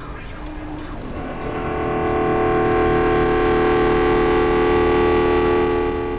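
Synthesizer drone: a chord of several steady, held tones swells in about a second in, holds, then fades near the end.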